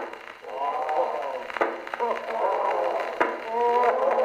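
Three sharp gunshot cracks, about a second and a half apart, a shooting-gallery gun effect on an acoustic-era phonograph cylinder recording. The range is thin and narrow, with no deep bass and no high treble, as played back on an Edison phonograph.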